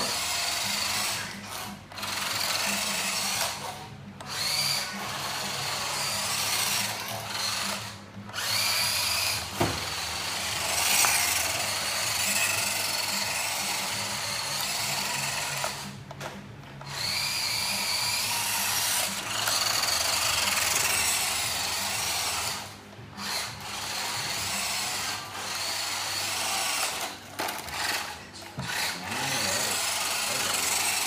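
WPL D12 1/10 RC truck's small electric motor and gears whining as it drives. The whine rises and falls in pitch with speed and stops briefly several times as the truck halts.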